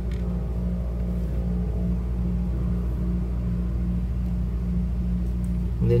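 A steady low hum with no speech over it.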